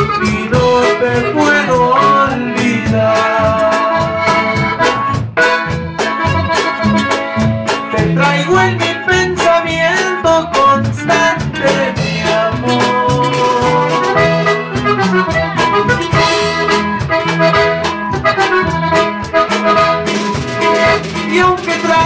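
A live norteño band playing: a button accordion carries the melody over strummed acoustic guitar, electric bass and a drum kit keeping a steady beat.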